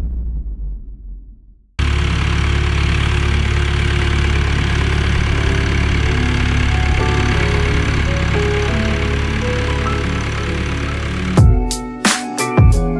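Farm tractor engine running steadily, coming in abruptly a couple of seconds in. Shortly before the end, strummed guitar music starts.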